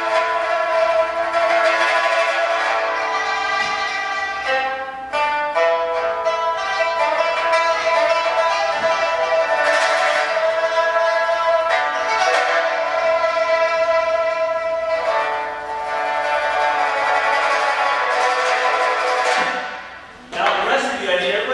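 Pipa played solo, mostly long sustained notes, with a run of quick repeated notes about five seconds in; the playing stops just before the end.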